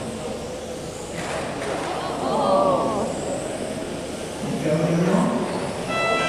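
Indistinct voices talking over a steady background noise.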